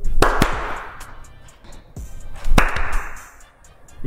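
Two loud hand claps about two and a half seconds apart, each trailing off in an echo from the bare walls of an empty room.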